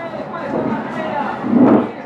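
Voices and stadium crowd noise from a televised football match broadcast, with a brief louder swell of noise about a second and a half in.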